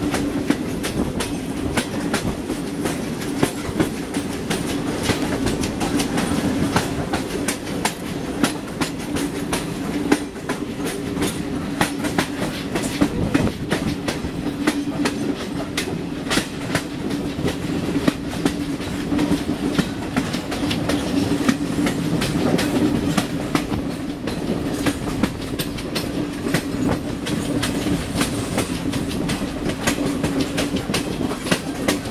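Passenger coaches running at speed on the track, the wheels clattering over rail joints in quick, irregular clicks over a steady low drone, heard from the side of the moving train.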